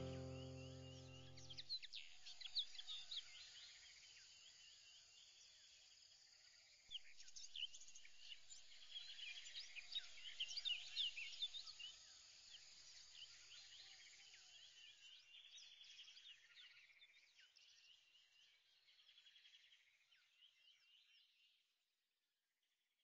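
A held music chord fades out in the first two seconds. Then comes faint birdsong, many quick chirps over a steady insect trill, busiest in the middle and dying away near the end.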